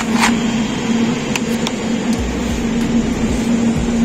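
Steady low machine hum of supermarket cooling and ventilation equipment, with a brief rustle near the start and a few light clicks from plastic meat trays being handled.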